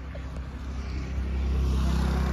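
A car's engine running, with a steady low hum that grows louder as the car approaches.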